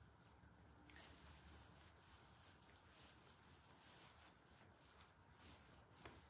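Near silence: room tone with a faint low hum and a few faint brief rustles and ticks as a georgette sari is unfolded and draped.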